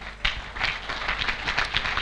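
Audience applauding, a dense patter of clapping that starts about a quarter of a second in and grows louder.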